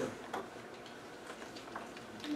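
Quiet room tone with a few faint, irregularly spaced clicks and ticks, the small handling noises of people at tables.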